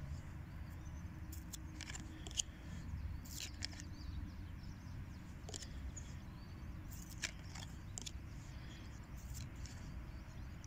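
Tarot cards being handled and shifted on a cloth: scattered light clicks and rustles of card stock, the sharpest about two and a half seconds in, over a steady low rumble.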